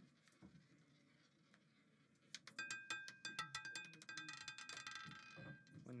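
A roulette ball clattering over the pocket separators of a spinning roulette wheel as it drops and settles: a quick run of sharp, irregular clicks starting about two and a half seconds in, with a metallic ringing that fades near the end.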